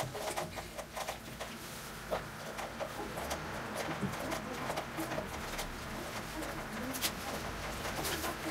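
Half a lime being twisted and ground on a plastic hand citrus juicer, giving irregular squeaks, creaks and clicks of fruit and plastic rubbing together.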